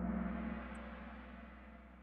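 Kahoot quiz game's time's-up sound effect: a single gong-like strike that rings and fades away steadily, marking the end of the question's countdown.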